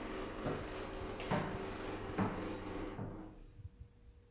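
A Stannah passenger lift's machinery running, heard from inside the car as it settles at the floor. It is a steady mechanical hum with three light clicks, and it stops about three seconds in.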